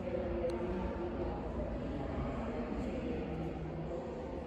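Indistinct voices of people talking at a distance over a steady low hum, no single voice standing out.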